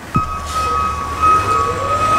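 A recycling truck running: a low engine rumble with a steady high-pitched whine and a slowly rising tone. The sound starts abruptly just after the beginning.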